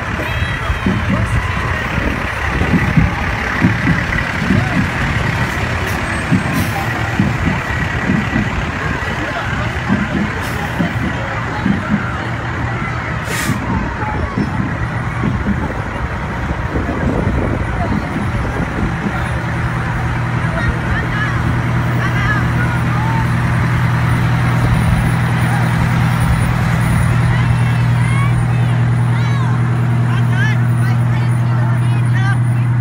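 Fire engines passing slowly in a parade, their engines running among crowd voices. A brief hiss comes about halfway through. In the last third a steady low engine hum grows as a fire engine comes close by.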